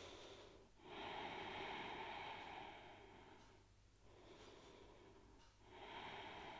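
Faint, deep breathing through the nose. A long breath starts about a second in and lasts about two seconds, a softer one follows after the middle, and another begins near the end.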